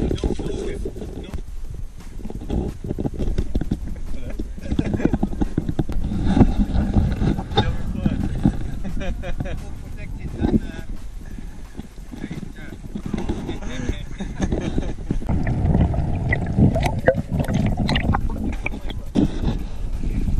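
Muffled, indistinct voices with irregular knocks and rumble, dulled by a waterproof camera housing.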